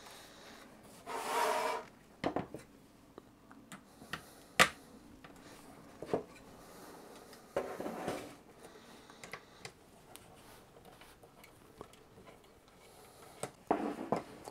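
Spring-loaded heatsink screws of a Shuttle DS61 mini PC being undone and the copper-and-aluminium heatsink lifted off: scattered light clicks and short scraping rubs of metal parts.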